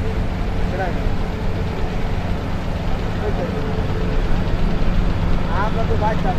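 A river passenger launch's engine running with a steady low drone. A few short voice calls come through it, about a second in and again near the end.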